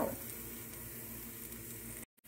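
Cubed eggplant frying in a little oil in a pan: a soft, steady sizzle as the cubes begin to brown.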